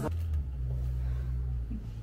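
A low, steady rumble lasting nearly two seconds, then stopping.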